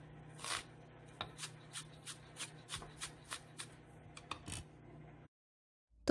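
Chef's knife slicing an onion on a plastic cutting board: a steady run of short, crisp strokes, about three a second, that stops shortly before the end.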